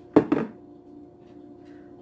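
Two quick knocks close together about a quarter-second in, like a hard object set down on a table, then only a faint steady hum.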